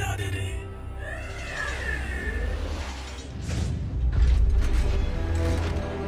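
Dramatic background music with a short wavering high glide about a second in, then a deep rumble swelling from about three seconds in.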